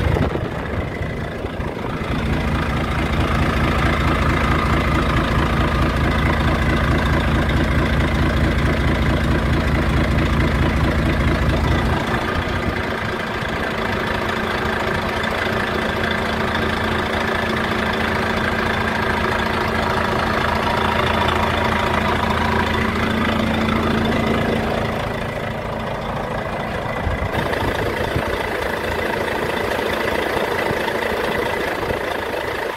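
Volvo FH truck's diesel engine idling steadily, heard from beside the chassis; its tone shifts about twelve seconds in and dips slightly near the end.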